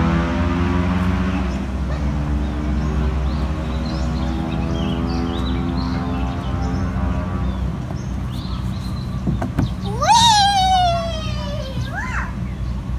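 A motor vehicle's engine drones with a slowly falling pitch, fading over the first several seconds. About ten seconds in, a child gives one long, loud high-pitched call that rises and then slides down over about two seconds, with a few knocks just before it.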